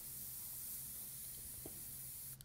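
Airbrush spraying thin paint at low air pressure, about 10 to 15 psi: a soft, steady hiss of air.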